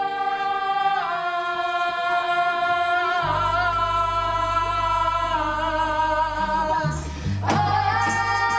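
A group of young singers holding long notes in harmony, with a low bass note joining about three seconds in. Near the end a drum hit brings the band back in.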